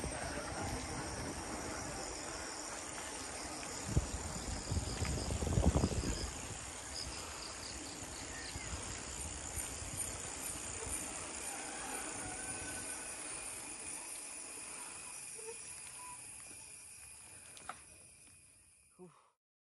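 Steady chirring of insects in roadside vegetation, high-pitched and continuous, over a low rumble from the ride with a few louder knocks about four to six seconds in. The sound fades out near the end.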